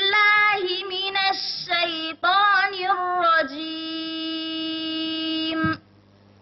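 One high-pitched voice chanting Qur'anic recitation in the melodic tajwid style: several short, ornamented phrases with brief breaths between them, then one long held note that stops shortly before the end.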